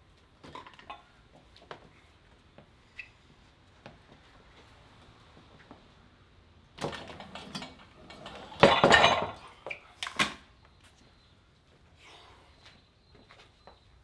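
Metal clinks and clanks from a cable-pulley vector wrench rig, the carabiner and loaded weight rattling as the handle is lifted and set back down. A few light clicks come first, then a cluster of loud clanks in the middle, the loudest about nine seconds in.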